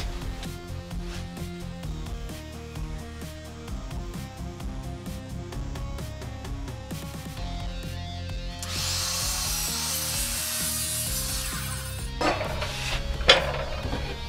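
Background music with steady notes. About nine seconds in, a Bosch mitre saw cuts through a laminated acacia board for about three seconds, a loud dense hiss. A couple of sharp knocks follow near the end.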